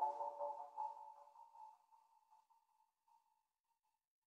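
The hip hop track's instrumental outro fading out: a few ringing melodic notes die away and are gone about three seconds in.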